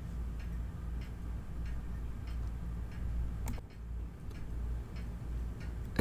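Faint regular ticking, about once a second, over a low steady hum, with one sharper tick about three and a half seconds in.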